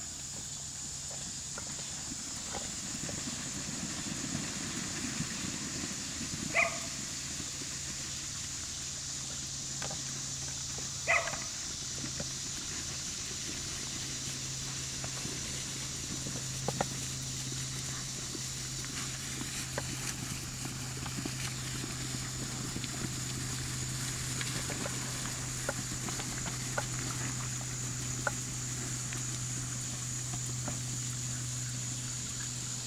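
Two short, sharp dog barks, about six and eleven seconds in, from kelpies working cattle. Under them is a steady low engine hum that gets stronger about halfway through.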